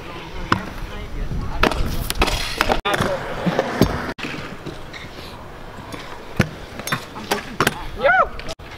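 Stunt scooter wheels rolling on a concrete skatepark surface, with several sharp clacks as the deck and wheels hit the ground. The sound breaks off abruptly twice where one clip cuts to the next.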